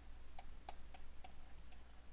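Faint, irregular ticks of a stylus tip tapping a drawing tablet as letters are handwritten, about five small clicks a few tenths of a second apart.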